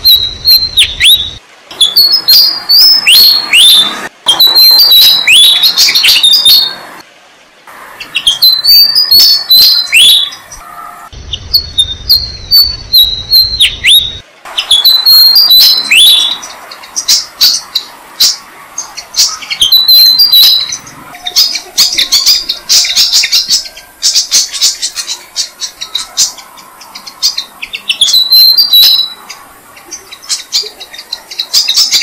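Malaysian pied fantail singing short repeated phrases of high, squeaky notes with quick downward sweeps, every few seconds. From about the middle on, the nestlings' rapid, high begging chirps join in as they are fed.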